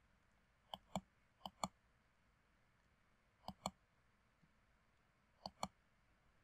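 Computer mouse buttons clicking: four pairs of short, sharp clicks, each pair a fraction of a second apart. Two pairs come close together about a second in, one near the middle and one near the end, against near silence.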